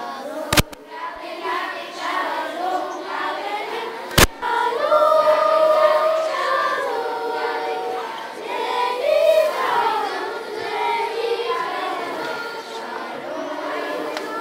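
Elementary-school children's choir singing together. Two sharp knocks cut through the singing, about half a second in and about four seconds in.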